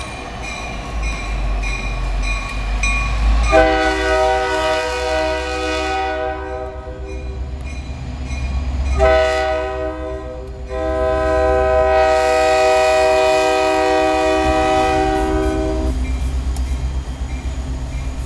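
Diesel freight locomotive passing close with its engine running, sounding its multi-note air horn: one blast a few seconds in, then another starting about nine seconds in and held for some seven seconds.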